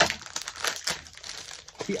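Plastic toy blind-pack wrappers crinkling in quick, irregular crackles as they are handled and opened. A voice exclaims near the end.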